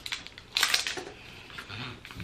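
Plastic lotion tube being opened by hand: short crackling, rustling bursts of the cap and seal being worked, the loudest about half a second in.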